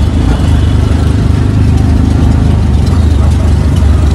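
Auto rickshaw engine running loudly as a steady low drone while the rickshaw rides through traffic, heard from inside its open passenger cabin with road noise mixed in.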